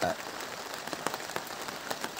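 Rain falling steadily, an even hiss with a few separate drops ticking now and then.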